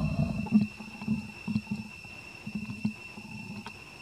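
Short, low grunts from a macaque, about eight in a row, loudest at the start and thinning out towards the end.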